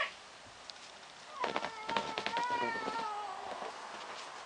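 A cat meowing: one drawn-out call of about two seconds, starting about a second and a half in and dropping slightly in pitch at the end.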